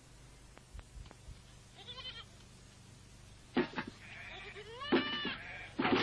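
Farm animals bleating: one faint bleat about two seconds in, then several louder bleats from about three and a half seconds on.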